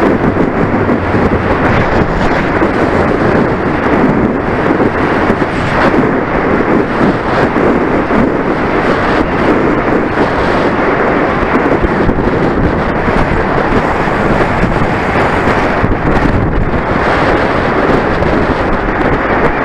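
Wind buffeting the microphone of a camera mounted on a racing road bicycle at speed: a loud, steady rumble with no pauses.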